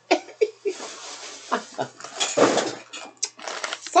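Plastic bags and packaging crinkling and rustling as items are handled, with a woman's short laugh about two seconds in.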